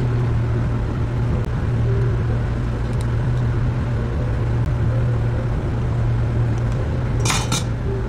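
Dishes and cutlery clinking at a cafe counter over a steady low machine hum, with two sharp clinks close together near the end.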